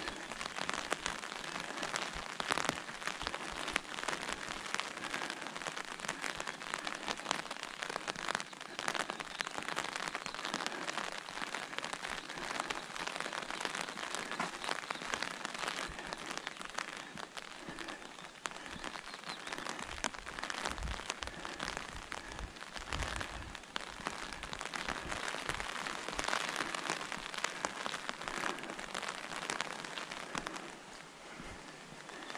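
Rain falling on an open fabric umbrella overhead: a dense, steady patter of drops with sharper single drop hits scattered through it. A few low bumps come about two-thirds of the way in.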